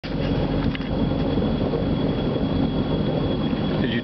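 Tow boat's engine running steadily at low speed, a continuous low rumble heard from on board, mixed with wind and water noise.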